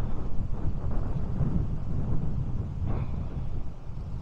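Wind buffeting the microphone over a low, uneven rumble of travel along the road.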